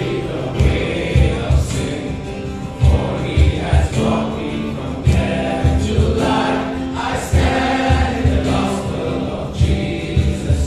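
A congregation singing a hymn together from hymn books, over instrumental accompaniment with a steady low beat.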